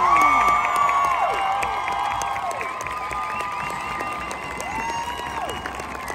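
Crowd in the stands cheering, whooping and clapping at the close of a marching band performance. It is loudest at the start and slowly tapers off, with several long falling whoops.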